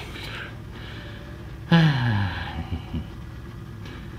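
Racing motorcycles idling on the starting grid. About two seconds in, one engine gives a sharp throttle blip, and its revs fall quickly back toward idle.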